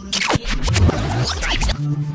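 A record-scratch sound effect: a quick run of scratching sweeps, one falling sharply near the start, over background music.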